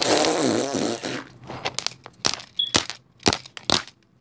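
Rough scraping noise for about a second as a plastic doll and hand rub against the recording device's microphone. A run of sharp taps and clicks follows, about eight in three seconds, as the dolls are handled and knocked on the wooden floor.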